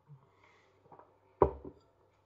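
A half-full beer glass set down on a kitchen worktop: one sharp knock about one and a half seconds in, with a smaller second knock just after as it settles.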